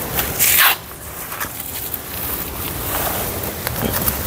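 A cloth rag rubbed over the oil drain plug and sump to wipe off spilled oil: a short scrubbing rub about half a second in, then faint rustling with a few small clicks.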